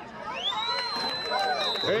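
A whistle blown in one long, steady blast that sweeps up to pitch at its start and holds for about two seconds, over sideline voices and crowd chatter.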